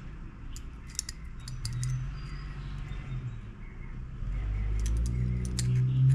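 Small metallic clicks and scrapes of needle-nose pliers gripping and working the crimped metal terminal on a small-engine spark plug wire, trying to uncrimp it. A low steady hum comes in about four seconds in, and the clicks grow thicker near the end.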